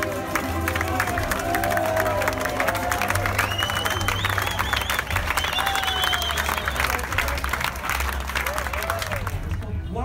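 Audience applauding, with cheers and whoops over the clapping, just after a ukulele band's song ends. The applause dies away shortly before the end.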